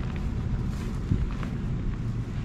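Steady low outdoor rumble with no distinct event.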